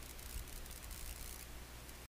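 Faint steady background hiss with a low hum: room tone.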